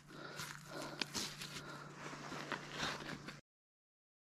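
Faint rustling and a few light knocks as a brook trout is handled on snowy ice, cutting off to silence a little over three seconds in.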